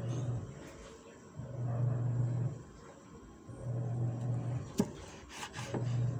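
Kitchen knife slicing through a tomato on a wooden cutting board, the blade scraping against the wood, with a few sharp knocks of the blade on the board near the end. A low hum swells and fades about every two seconds.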